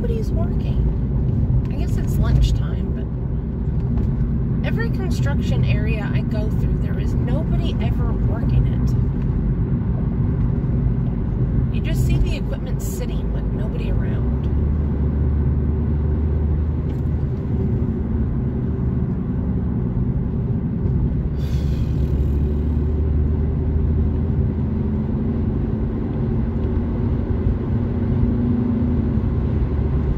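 Inside a moving car on a highway: the steady low rumble of engine and tyre road noise, growing heavier and deeper from about halfway through.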